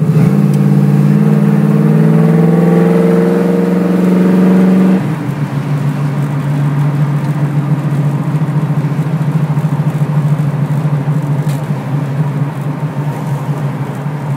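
1969 Camaro SS V8 heard from inside the cabin, pulling under acceleration with its note climbing for about five seconds, then dropping suddenly and settling into a steady cruising drone.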